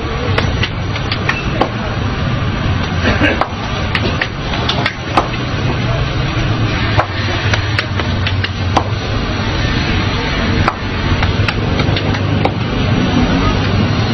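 Flatbread dough slapped between a vendor's hands, sharp slaps coming irregularly about every half second to a second over a steady background of street noise and voices.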